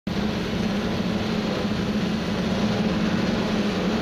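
Steady drone of a piston aircraft engine, a strong low hum over a rushing noise.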